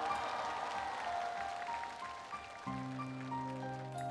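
Live band music closing a slow ballad: a keyboard plays slow single notes, stepping downward, over a soft noisy wash. About two and a half seconds in, a low sustained chord comes in beneath the notes.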